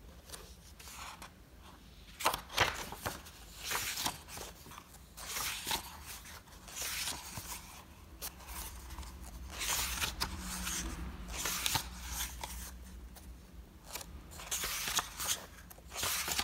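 Pages of a paper notebook being turned and smoothed down by hand: a series of short papery swishes and rustles, starting about two seconds in.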